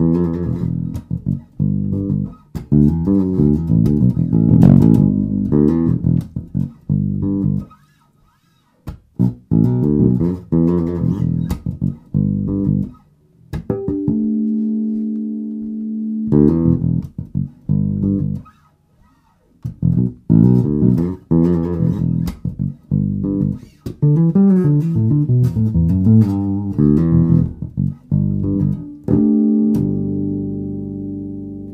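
1978 Music Man StingRay electric bass played fingerstyle in a funky E minor groove, with two short pauses. About halfway through, and again at the end, several notes are left ringing together.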